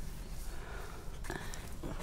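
Long-handled wash brush scrubbing soapy water over the side panel of a motorhome: an uneven swishing noise.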